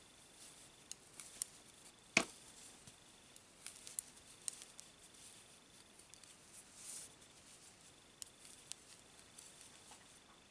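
Knitting needles clicking and tapping faintly as stitches are worked in wool, a scatter of small irregular clicks with one sharper click about two seconds in.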